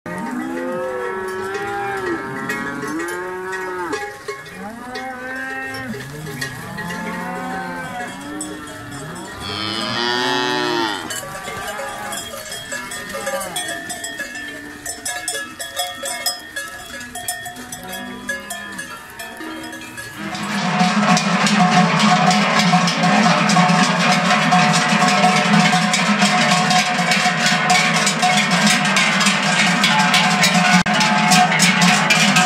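A herd of cattle moving together, mooing again and again over clinking cowbells. One higher call rises and falls about ten seconds in. After about twenty seconds the sound turns into a louder, dense clanging of many large cowbells.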